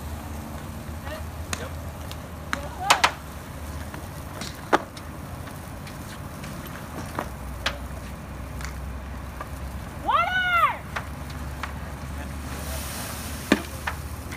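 Wooden burn structure fully involved in fire: sharp cracks and pops over a steady low rumble. About ten seconds in, a short high call rises and falls.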